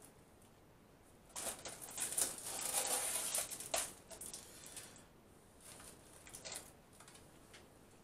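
Plastic film lid being peeled and pulled off a foil tray, crinkling and crackling in a burst of about two and a half seconds that ends in a sharp click, then fainter rustles a few seconds in.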